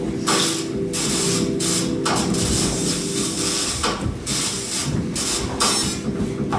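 A mechanical, ratchet-like noise score: bursts of crackling hiss that cut in and out irregularly, roughly once or twice a second, over a steady low drone.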